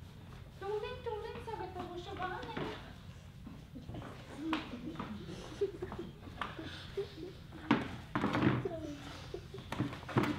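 A quiet voice in a hall, then a few knocks and thumps on a wooden floor, the loudest near the end as a plastic tub is set down beside the buckets.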